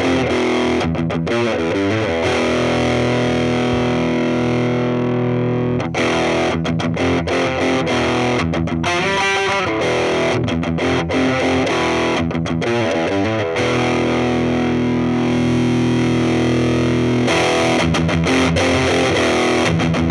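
Electric guitar played through a TC Electronic Dark Matter distortion pedal into a Laney CUB12 valve amp. It plays heavily distorted chords and riffs: long ringing chords broken several times by quicker runs of notes.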